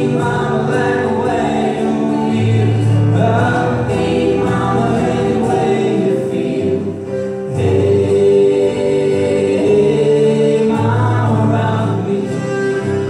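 Live acoustic folk song: singing over strummed acoustic guitar and fiddle, with a steady bass pattern underneath.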